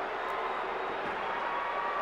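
Steady crowd noise in a hockey arena just after an overtime goal, an even wash of many voices with no single sound standing out.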